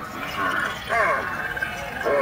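Indistinct voice sounds in short phrases with sliding pitch, with no clear words.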